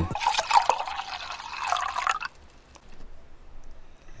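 A noisy, hissing sound-effect sample with scattered clicks, played back from the beat's FX track. It cuts off a little over two seconds in, leaving only faint sound.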